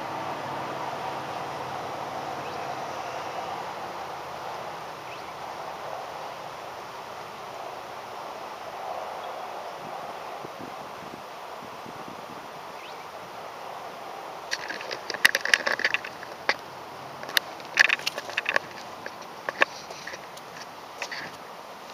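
Steady outdoor hum of distant street traffic and air. From about two-thirds of the way in, a run of sharp clicks and knocks as the camera is handled and picked up, turning into footsteps on a concrete path near the end.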